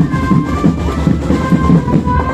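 Marching band playing: a steady drum beat with short, held wind-instrument notes above it.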